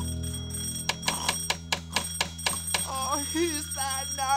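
A bell rings in rapid strikes, about five a second, for about two seconds over a held music chord: the night bell waking the hotel keeper. Near the end, a wavering, wobbling voice-like sound follows.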